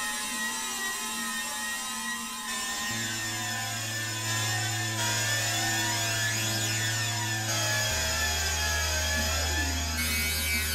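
Novation Supernova II synthesizer played live through real-time effects: a dense, shrill wash of many criss-crossing gliding high tones. A low held bass note comes in about three seconds in and drops to a lower note near eight seconds.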